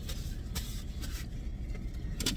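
Steady low hum inside a parked car's cabin, with a couple of faint soft rustles and clicks from hands handling food.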